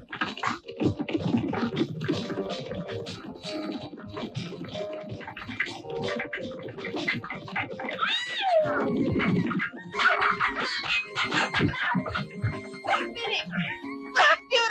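Galloping horses pulling a clattering horse-drawn carriage: a dense, rapid run of hoofbeats and rattling. About eight seconds in comes a loud, high wavering cry.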